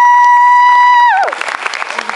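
Audience applauding, with a loud, long whistle over it that glides up, holds one high note and drops away just after a second in.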